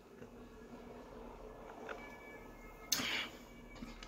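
A man drinking from a plastic shaker cup, with faint swallowing sounds, then a brief breathy sound about three seconds in as the drink ends.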